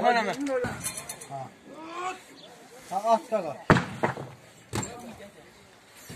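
Men talking indistinctly while used tyres are being loaded onto a truck. About halfway through come two sharp knocks, a second apart.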